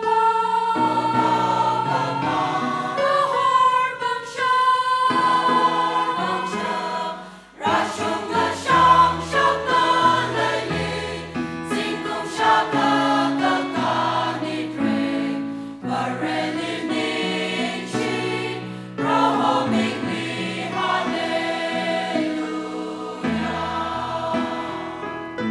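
Mixed choir of men and women singing a hymn in harmony, accompanied by an electronic keyboard, with a brief break between phrases about seven seconds in.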